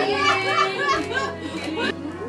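A group of women chattering and laughing excitedly together, over background music.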